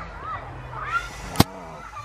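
Faint voices in the background over a low steady hum, with a single sharp click about a second and a half in.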